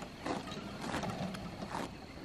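Push lawnmower and power wheelchair moving over grass, making a faint, uneven mechanical sound.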